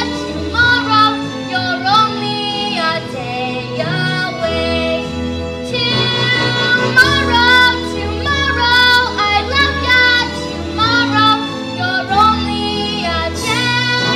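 A girl's solo singing voice over instrumental accompaniment, a musical-theatre song sung on stage.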